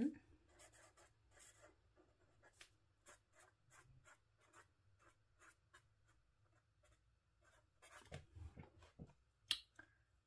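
Faint scratching of a purple Tombow pen writing by hand on journal paper, a quick string of short strokes.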